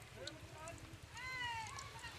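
A single high animal cry a little after halfway through, drawn out for well under a second and falling slightly in pitch, over faint crackling of potato cakes frying in oil.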